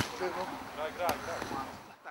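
A beach volleyball struck by hand: a sharp smack at the start and another about a second in. Faint voices of players and onlookers in between.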